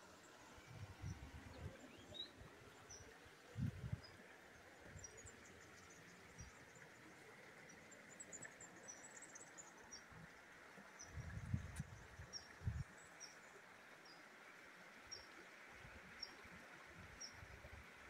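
Near silence: faint outdoor ambience with scattered faint, high bird chirps and a few soft low bumps, one about four seconds in and a cluster near the two-thirds mark.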